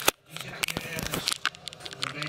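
Handling noise of a hand-held camera being swung round: scattered small clicks and rustles of fingers and fabric against the device.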